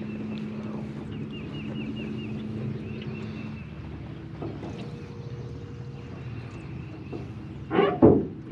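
Small jon boat motor running steadily with a low, quiet hum; its pitch shifts about three and a half seconds in.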